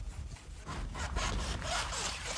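Rhythmic creaking and rasping from a sulfur porter's bamboo carrying pole and woven baskets, heavily loaded with sulfur, as he walks. It starts under a second in and repeats a few times a second.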